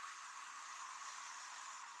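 A man's long, steady breath blown out through pursed lips, a breathy hiss: the slow release breath of a guided breathing exercise.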